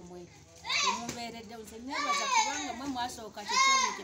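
Children's high-pitched cries and shouts: a short rising call about a second in, a long falling one in the middle, and a short one near the end.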